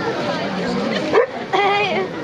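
Foxhound yelps sharply a little over a second in, then gives a short high whining yelp, in the scrum of a hound pack feeding. People chatter steadily behind.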